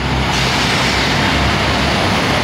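Steady city street traffic: a low engine rumble under a rushing hiss of passing vehicles that swells about a third of a second in.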